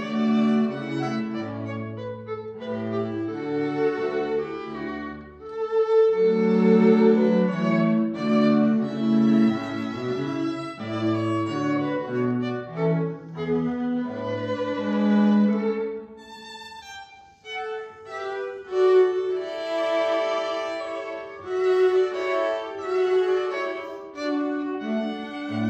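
A string trio of violin, viola and cello playing classical chamber music, the parts moving together in bowed, sustained notes. About two-thirds through, the playing drops briefly to a soft passage, then returns to full volume.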